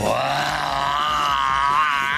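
A man's long, drawn-out vocal 'aaah', held for over two seconds with a slight waver in pitch.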